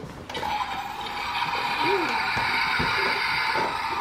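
Toy dollhouse toilet's flush sound effect: a recorded rush of water starting just after the flush is pressed and running steadily for several seconds.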